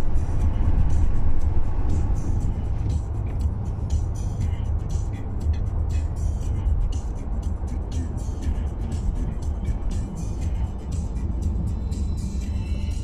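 Music playing on the car radio over the steady low rumble of engine and tyre noise, heard inside the cabin of a moving car.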